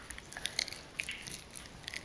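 A small child biting and chewing meat off a chicken drumstick. Faint, with scattered small clicks and crunching of meat and gristle.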